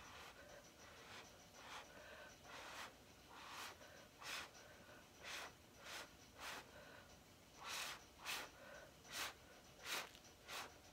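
Short puffs of breath blown by mouth onto wet acrylic paint to push it across the canvas, about a dozen in all, coming closer together in the second half.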